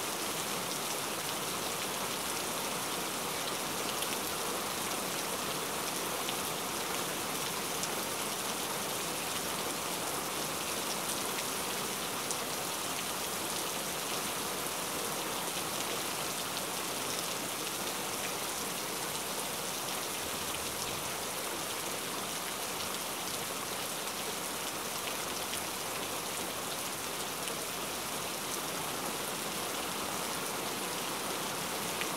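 Steady rainfall: an even hiss that never breaks, with a few faint drop ticks.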